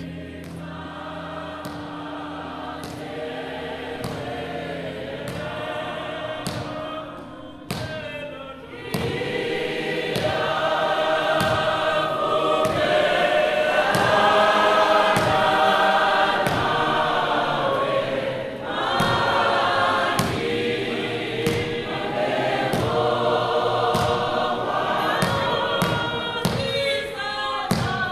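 A choir singing, several voices together, with a steady beat of thuds under it; the singing grows louder about nine seconds in.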